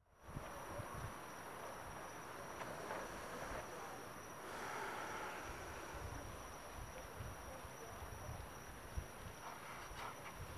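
Faint night-time outdoor ambience: a steady, high-pitched insect drone, with scattered low rumbles of wind or handling on the camera's built-in microphone.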